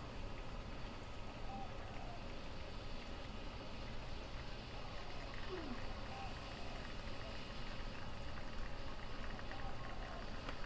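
La Pavoni lever espresso machine pulling a shot: a faint steady hiss and trickle as espresso streams into the cup under the held-down lever, with one brief falling tone about halfway through.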